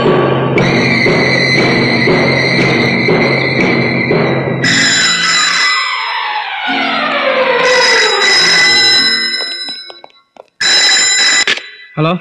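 Dramatic film background score of sustained chords that gives way to a long falling sweep and fades out. Over it a landline telephone rings in short bursts about three seconds apart, the last ring heard on its own near the end.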